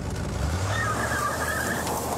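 A produced sound effect inside a radio station imaging spot: a low rumble with a wavering high-pitched tone over it for about a second.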